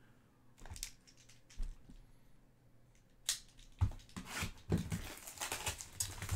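Trading-card pack wrapper being handled and torn open: a few faint ticks, then sharp crackles from about three seconds in, turning into denser crinkling near the end.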